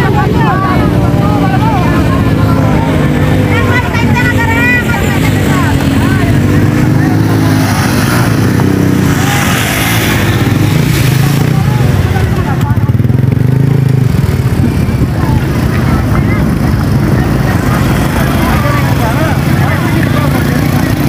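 Many motor scooters' small engines running together in a slow, crowded queue, a steady hum with the chatter of a crowd's voices over it.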